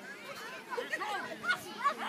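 Overlapping chatter of several voices calling out at once, with two louder calls near the end.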